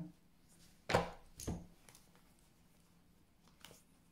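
Deck of tarot cards being handled: a sharp tap about a second in and a second tap half a second later, then a few faint clicks.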